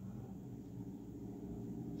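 Faint steady low hum of background room tone, with no distinct events.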